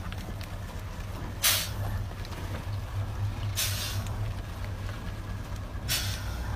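Heavily loaded three-axle truck creeping downhill, its engine a steady low hum, with three short, sharp air-brake hisses about two seconds apart. The first, about one and a half seconds in, is the loudest.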